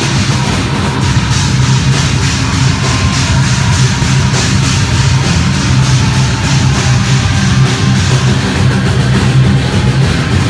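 Loud live heavy rock band playing: drum kit with bass drum, and amplified instruments in a dense, unbroken wall of sound.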